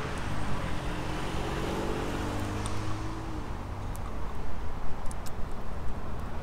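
Road traffic going by, a vehicle's engine note clearest in the first few seconds over a steady low rumble.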